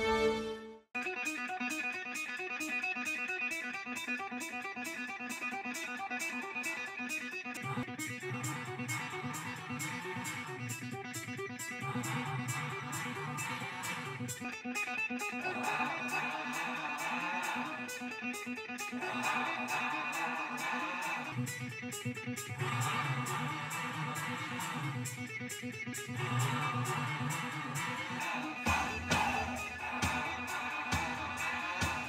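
A song led by electric guitar, playing through a Toyota Tacoma's factory stereo and picked up by a microphone inside the cab, with little bass.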